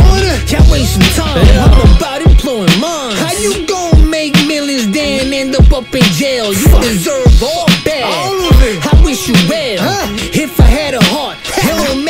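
Hip hop track: rapping over a beat with a steady deep kick drum. A sustained low bass drops out about two seconds in.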